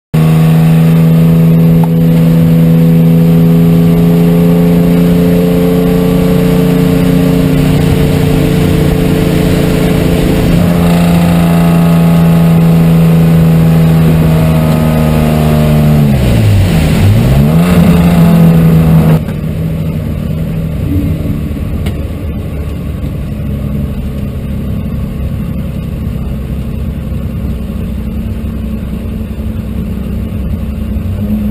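Subaru race car's engine heard from inside the stripped cockpit, held at high revs with a nearly steady note. About sixteen seconds in the revs dip sharply and climb back, and a few seconds later the engine note falls away suddenly to quieter running and road noise as the throttle is lifted.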